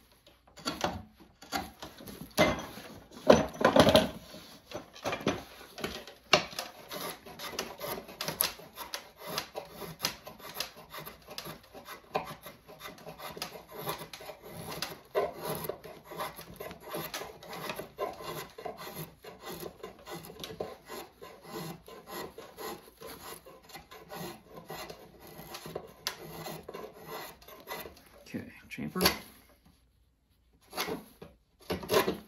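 Hand tools shaping a wooden axe handle: repeated rasping strokes of a file or rasp across the wood, mixed with drawknife cuts, as the upper end is chamfered. The strokes come one after another all the way through, loudest a couple of seconds in.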